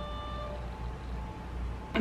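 The end of a single steady ringing chime tone, which stops about half a second in. After it there is only a low room hum.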